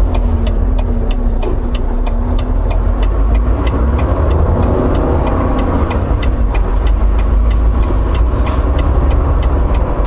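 Semi-truck's diesel engine and road noise heard inside the cab, a steady heavy rumble as the truck pulls through a turn, with the turn signal ticking evenly until near the end.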